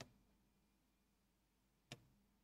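Two short, faint taps of a stylus on an interactive touchscreen board while writing, one right at the start and one near the end, with near silence between.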